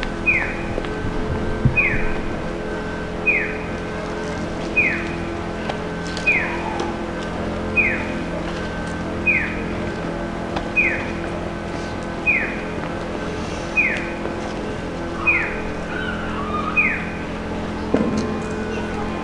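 Electronic chirp of an accessible pedestrian crossing signal: a short falling tone repeated about every one and a half seconds, twelve times. It plays over a steady drone of idling vehicle engines.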